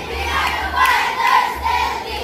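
A large group of schoolchildren shouting a chanted yell in unison, many voices rising and falling together in a rhythmic cheer.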